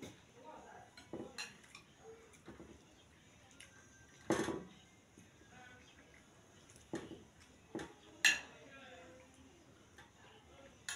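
Metal spoon clinking and scraping against a ceramic plate of rice and stew as food is scooped up: a handful of separate sharp clinks, the loudest about four and a half and eight seconds in.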